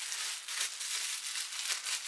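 Thin clear plastic bag crinkling and rustling as it is handled and pulled open by hand.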